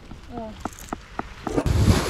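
Pebbles clicking against each other as a baby crawls over a shingle beach, single sharp clicks about every quarter second. About a second and a half in, a sudden loud rush of surf on the shingle with wind rumble on the microphone takes over.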